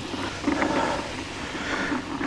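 Push-type broadcast fertilizer spreader being wheeled over grass, giving a steady rolling noise from its wheels and spinner, with its hopper nearly empty of granules.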